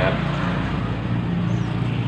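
A steady, low engine hum with no break.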